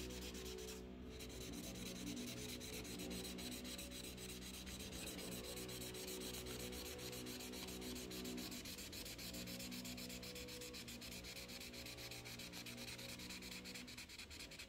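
Imagine Ink mess-free marker rubbed back and forth on the coloring page in fast, even strokes. Under it is a faint, wavering engine drone from the gardeners' power equipment outside.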